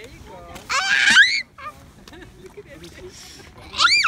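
A young girl's high-pitched shriek as a deer eats from her hand, with a second, shorter rising squeal near the end.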